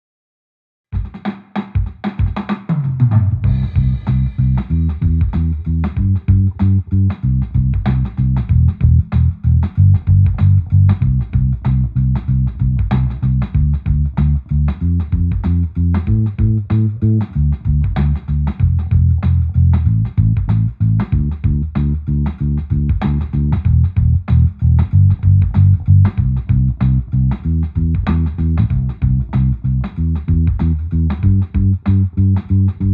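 Electric bass playing a groove that moves back and forth between C major and D minor triads, each in root position and then first inversion, over a steady drum beat. It starts about a second in.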